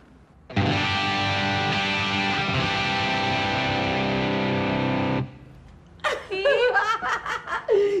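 Electric guitar played with a pick through an amplifier: one loud sustained chord rings for about four and a half seconds, then cuts off abruptly.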